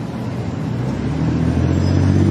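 A car engine running on a city street, its low hum growing steadily louder through the second half.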